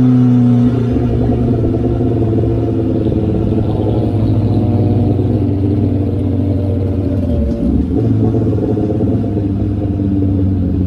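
Sport motorcycle engine heard from the rider's seat, cruising in traffic. The pitch falls as the throttle is rolled off until just under a second in, then the engine runs steadily with a wavering pitch, with a short dip in sound about seven and a half seconds in.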